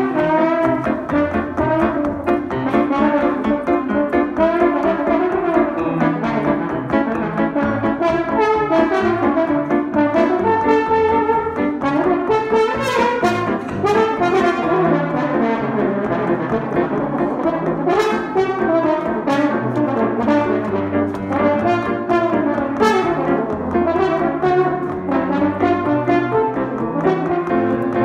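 Trombone playing a jazz melody with grand piano accompaniment, the piano's bass notes moving underneath.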